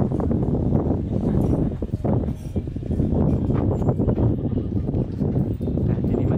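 Footsteps on wooden deck boards and camera handling knocks, uneven and irregular, over a steady low rumble on the microphone.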